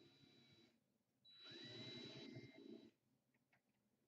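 Cordless drill driving a screw into a sword handle, running until under a second in; after a short gap it runs again with a whine that rises and then holds, stopping about three seconds in. A couple of light clicks follow.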